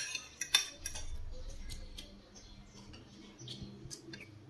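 Metal spoon and fork clinking and scraping on a ceramic plate during a meal. There are two sharp clinks in the first second, then fainter taps and scrapes.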